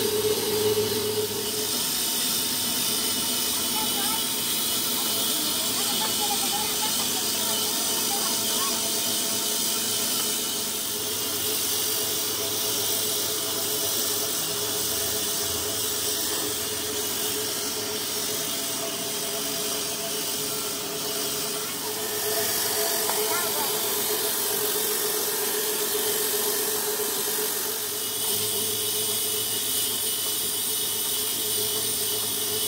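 A workshop's flywheel-driven metal machine running steadily, a constant hiss with a low hum. Faint voices are heard in the background.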